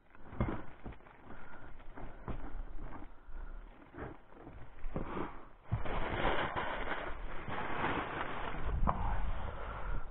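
Close handling noises of a bread-filled fishing feeder being packed: crinkling and rustling with scattered clicks. From about halfway it turns into a louder, continuous rustle.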